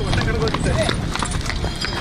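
Footsteps of a crowd walking on stone paving: many shoes clicking and scuffing, with people talking over them.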